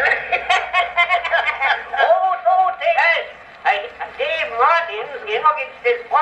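A spoken comedy recording playing on an Edison Amberola cylinder phonograph: two voices talking back and forth through the horn, thin and narrow-sounding with no bass. The words don't seem to be in English.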